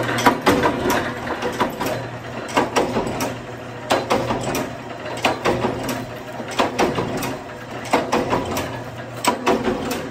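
Small rubber drum bushes clattering and knocking together as they are picked up and packed by hand, with crinkling of plastic bags; the knocks come irregularly, several a second in clusters.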